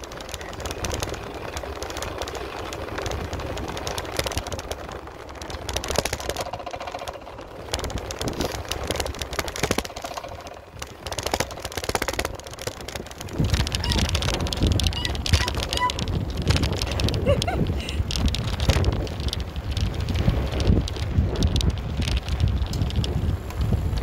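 Wind buffeting a phone's microphone on a moving bicycle, a steady rushing rumble that grows heavier about halfway through.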